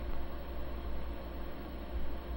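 Steady low hum under an even hiss: the background noise of a studio recording, with no other sound standing out.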